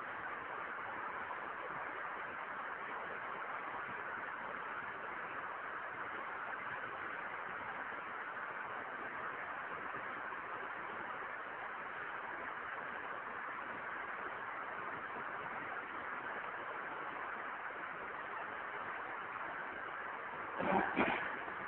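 Steady, even hiss of recording background noise, with nothing else standing out.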